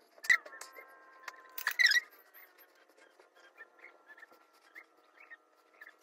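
Soft clicks and light wet handling sounds of a liquid face mask being spread onto the skin by hand. The loudest clicks come about a third of a second in and again near two seconds, followed by scattered faint ticks over a faint steady high whine.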